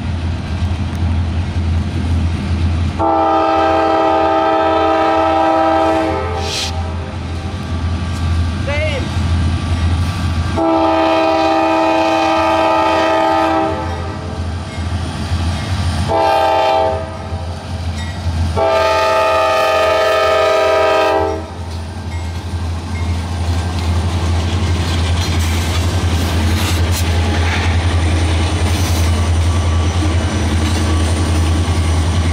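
Norfolk Southern diesel freight locomotive sounding its multi-chime air horn in the grade-crossing pattern, long, long, short, long, over the steady low rumble of the locomotives. After the last blast, near the end, the locomotives rumble on as the train rolls by.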